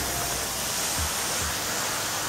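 Steady hiss of water spray from a car-wash pressure washer, with a soft low thump about a second in.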